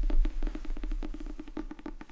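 Fingers tapping quickly on the hard cover of a hardback book, about ten light taps a second, with a hollow knock from the board. The taps grow a little softer toward the end.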